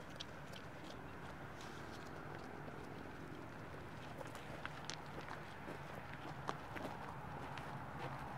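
Faint, steady outdoor background noise with a low hum underneath, broken by scattered light clicks and ticks at irregular intervals.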